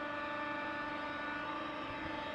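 Steady hum of treatment-plant machinery: several steady pitches over a soft rushing noise, unchanging throughout.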